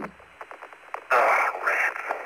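Lunar-surface radio transmission from an astronaut's suit radio: narrow-band, crackly static with faint clicks, then a louder burst of muffled transmission starting about a second in.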